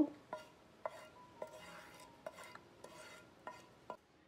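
Wooden spatula scraping thick, coarse coconut chutney out of a nonstick pan into a ceramic bowl. About half a dozen light taps, each with a brief ring, come as the spatula and pan knock against the bowl.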